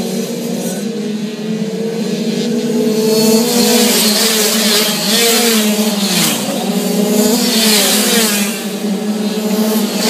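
Several Kawasaki 65cc two-stroke minimotard bikes racing past at high revs. Their overlapping engine notes rise and fall as they pass, with one swooping down in pitch about six seconds in.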